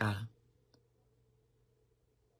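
A man's speech trails off in the first moment, then near silence with one faint click about three-quarters of a second in.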